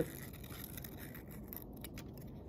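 Scissors cutting construction paper: quiet snipping and rustling of the paper as a small heart shape is cut out.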